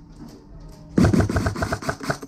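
Airsoft gun firing a rapid full-auto burst, about ten shots a second, starting about a second in.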